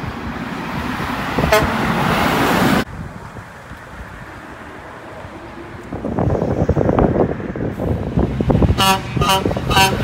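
Mack dump truck passing, its noise building and then cutting off abruptly about a third of the way in. A second heavy dump truck's diesel engine then pulls away, and a horn gives three short toots in the last second or so.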